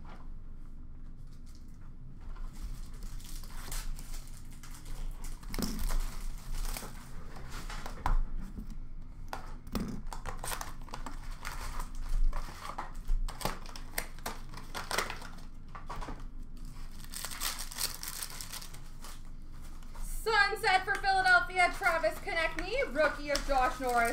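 Hockey card packs being torn open and their wrappers and cards handled: irregular crinkling and rustling with sharp tearing crackles. A man's voice comes in near the end.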